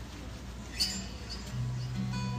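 A brief high squeak a little under a second in. About one and a half seconds in, a low held note from the worship band begins as the band starts playing.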